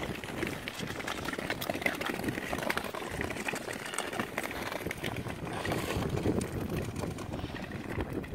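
Several long-bladed tour skates gliding and scraping over natural lake ice: a steady scraping hiss broken by many small ticks and clicks.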